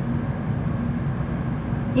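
Interior running noise of a JR Central N700A Shinkansen under way: a steady low rumble with a faint steady hum, heard from inside the passenger car.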